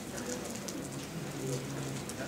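Low, indistinct voices murmuring, with scattered faint clicks throughout.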